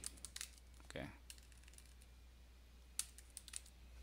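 Faint computer keyboard typing: a quick run of keystrokes at the start and a few more keystrokes about three seconds in.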